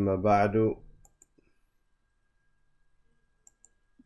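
A man's voice gives a short held sound without clear words, under a second long. After it comes quiet with a few faint clicks, a cluster about a second in and two more past three seconds.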